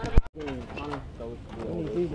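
Voices shouting and calling out across a ballfield, with a single sharp knock, the loudest sound, just after the start, followed by a brief cut-out.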